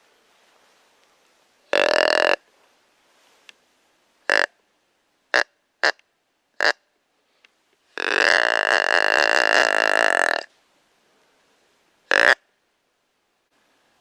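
Deer grunt call blown close to the microphone: a series of short, burp-like grunts, with one long drawn-out grunt in the middle and a last short grunt near the end.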